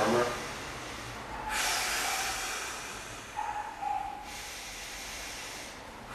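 A man on a massage table breathing heavily: a long, rushing breath starts about a second and a half in and lasts about three seconds, with a short hum in it. His breath rate is increasing quite rapidly.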